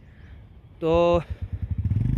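A vehicle engine idling with an even low beat, growing louder in the second half.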